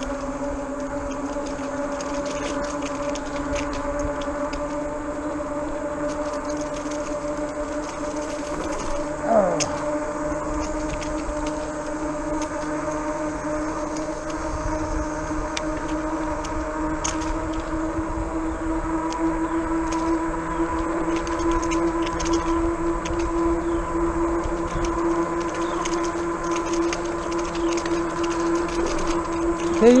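RadRover fat-tire e-bike riding along a paved trail: a steady whine from its drive and tyres that rises slowly in pitch, over a low rumble. A short falling squeak comes about nine seconds in.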